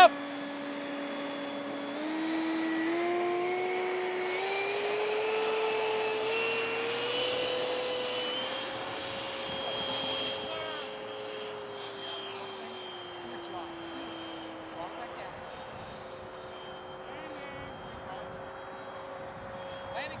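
90mm electric ducted fan of a SebArt Fiat G.91 foam jet model spooling up for its takeoff run: a whine that rises in pitch for several seconds, then holds steady as the jet rolls and climbs away.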